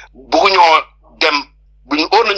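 Speech: a voice saying a short phrase and then a brief word.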